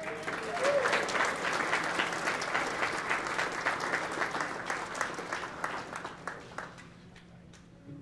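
An audience applauding. The clapping swells within the first second, stays dense for several seconds, then thins out and dies away about a second before the end.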